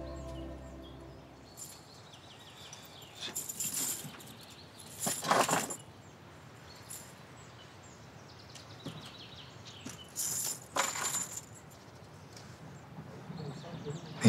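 Background music fading out, then quiet outdoor ambience broken by a few short bursts of noise, the loudest about five seconds in and two more close together around ten seconds in.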